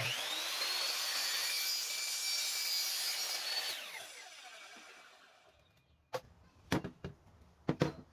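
Ryobi sliding miter saw cutting through PVC pipe: the motor starts with a rising whine and runs steadily for about three and a half seconds. It is then switched off, its whine falling as the blade winds down over about a second. A few short knocks follow near the end.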